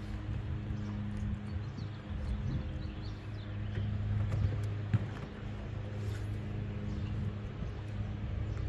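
Bow-mounted electric trolling motor humming steadily in a low tone that dips and swells a little, with a sharp click about five seconds in.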